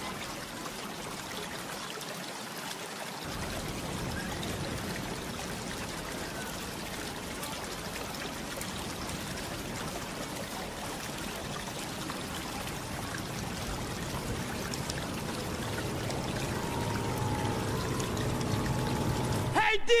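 Steady rushing, trickling water ambience, with faint steady tones coming in over the last few seconds.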